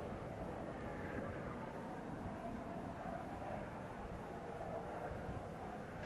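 Faint, steady rushing noise with no clear pattern and no distinct events.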